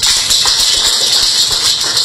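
A steady, loud hiss fills the pause in speech, with no tone or rhythm in it.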